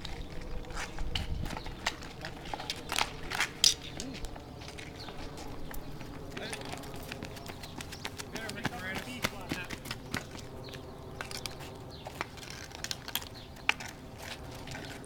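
Outdoor ball hockey on asphalt: hockey sticks knock against the ball and the pavement in irregular sharp clacks, one especially loud a few seconds in. Players' indistinct voices and shouts carry in the background.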